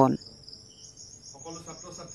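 A steady, high-pitched insect trill, with faint voices starting about one and a half seconds in.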